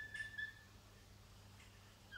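Whiteboard marker squeaking in short high tones as it writes on the board, mostly in the first half second, then only a faint low hum.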